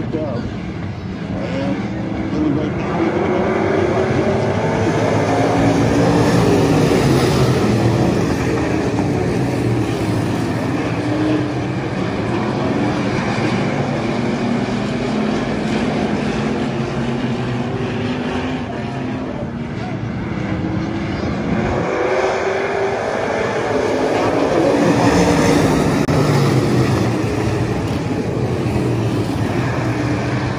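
A field of IMCA Stock Cars' V8 engines racing around a dirt oval, many engines overlapping with pitch rising and falling as they throttle through the turns. The sound swells loud twice as the pack passes close by, about six seconds in and again near the end.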